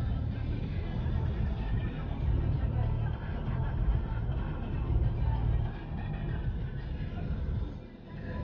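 Car interior noise while driving slowly in traffic: a steady low engine and road rumble, with a car radio playing quietly underneath.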